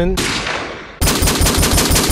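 Edited-in gunfire sound effect: a blast that fades out, then about a second in a loud, rapid burst of automatic gunfire.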